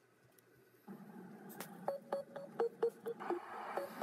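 Opening of a music video's soundtrack playing back: after a second of near silence, a low hiss with short beeping notes and scattered clicks.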